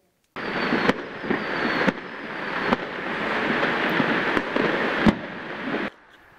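Firecrackers going off in a dense, continuous crackle, with a few sharper bangs standing out over it. It starts abruptly just after the beginning and stops suddenly just before the end.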